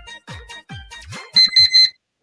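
Online countdown timer's alarm beeping three quick times as it reaches zero, over electronic dance music with a steady kick-drum beat.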